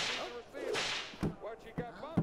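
Two sharp, hissing whoosh-like sound effects, one at the start and one just under a second in, with short wordless vocal sounds between and after them.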